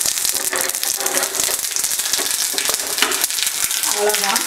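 Tempering of cumin and onion frying in hot oil in a small iron tadka pan: a steady, dense sizzle thick with fine crackles.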